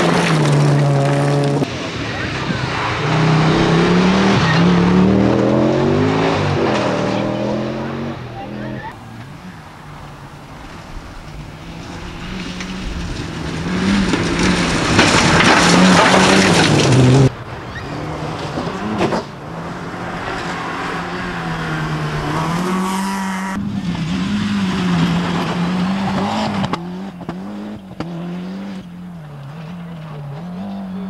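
Rally car engines revving hard, their pitch climbing and dropping through gear changes as the cars pass at speed, over several cut-together passes. Around the middle a loud rushing noise builds and cuts off abruptly, with some tyre noise.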